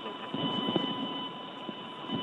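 Steady hiss of an open space-to-ground radio loop, with faint steady tones running through it.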